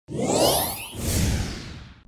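Logo intro sting of whoosh sound effects: one swish swells and peaks about half a second in, then a second, longer one fades away toward the end.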